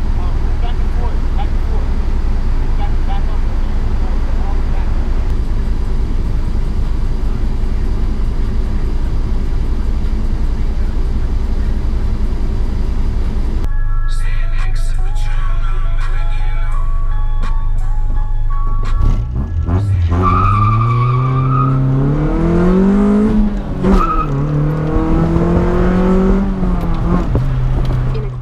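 Honda Civic's JDM B20B non-VTEC four-cylinder with an aftermarket muffler, heard from inside the cabin, idling steadily. About halfway through the sound changes suddenly, and later the engine pulls away: its pitch rises, drops at a gear shift, then rises again before settling.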